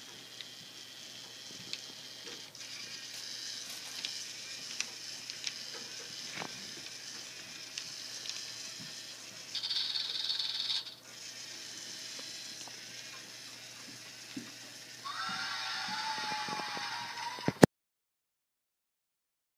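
Lego Mindstorms EV3 robot driving along a line with a faint motor whir. About ten seconds in it stops and its speaker plays a short hiss, the programmed snake sound. About four seconds later it plays a longer cheering sound clip, which is cut off by a sharp click.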